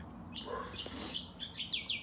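Birds chirping in short high calls, then a quick run of short falling notes in the second half.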